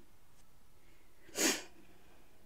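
A woman's single short, sharp intake of breath about one and a half seconds in: the gasp of a sneeze building up that then doesn't come.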